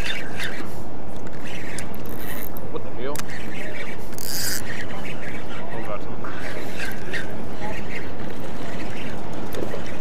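Steady wind noise rushing on an action camera's microphone, with faint voices of other anglers under it.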